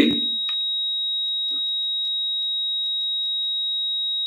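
Heart monitor's flatline alarm: one steady, unbroken high-pitched tone, the signal that the heart has stopped and there are no vital signs.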